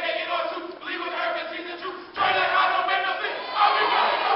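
A group of men's voices shouting a chant together in phrases, with short breaks about a second and two seconds in, amid a crowd in a hall.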